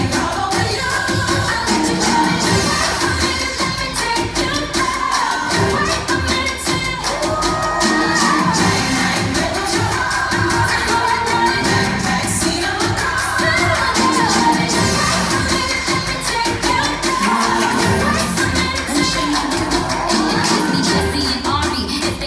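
Recorded pop dance music with singing and a steady beat, played over the hall's loudspeakers.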